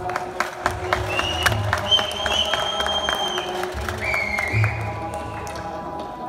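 Afghan rubab plucked in a fast run of sharp strokes, accompanied by tabla with deep, booming bass-drum strokes.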